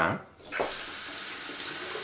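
Water running steadily from a tap into a sink, coming on about half a second in.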